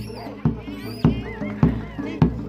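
Live bantengan accompaniment music: a drum struck on a steady beat about every 0.6 s under sustained tones, with high wavering, gliding pitches above.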